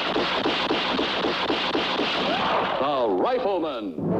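Lever-action Winchester rifle fired in rapid succession, about four shots a second, the reports running together. In the last second and a half, wavering whines fall in pitch.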